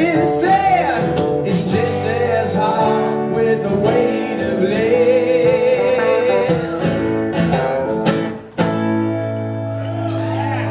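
Live acoustic guitar and electric guitar playing a slow country-blues song while a man sings. A little past eight seconds the sound dips briefly, and then the guitars carry on alone with steady held notes.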